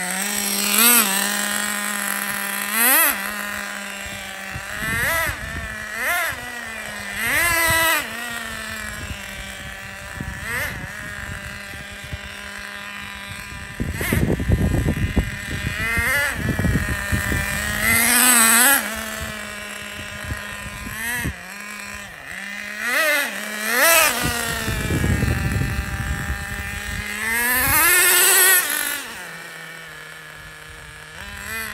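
Traxxas Nitro Rustler's Pro 15 two-stroke nitro engine idling with a steady buzz and revving up in repeated short bursts as the truck drives, its pitch rising and falling with each blip. Low rushing noise comes in twice, around the middle and shortly before the end.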